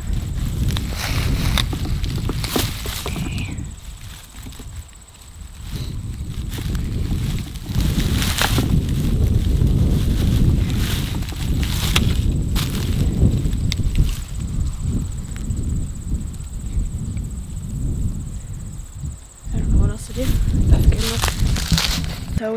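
Footsteps and handling crackling through dry corn stubble in scattered sharp crunches, over a low, gusting rumble of wind on the microphone.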